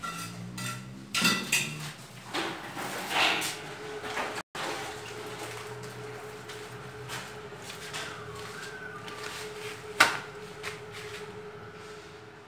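A steel bricklaying trowel scraping and knocking on mortar and ceramic bricks, with irregular metallic clinks and scrapes. A single sharp knock stands out near the end.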